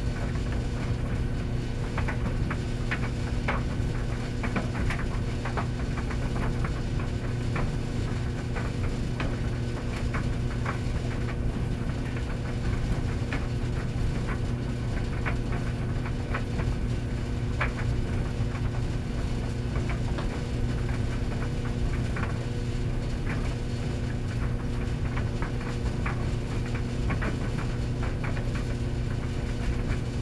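Commercial laundromat tumble dryer running with a steady low motor hum and scattered light clicks.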